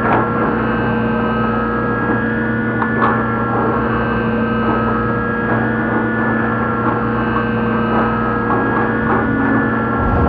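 Dark ambient drone music: several layered tones held steady over a dense hum, with faint scattered clicks.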